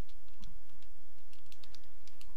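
Light clicks of keys being pressed in short quick runs, one about half a second in and more through the second half, over a steady low background hum.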